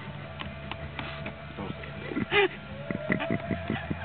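Spoons clicking against plastic bowls during a meal, with a short burst of voices a little past halfway. A thin steady tone runs underneath and rises slightly near the end.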